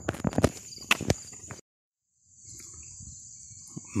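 Footsteps on a paved road, a quick series of scuffs and knocks, over a steady high chirring of insects. The sound cuts out abruptly for under a second in the middle, then the insect chirring returns faintly over low outdoor background noise.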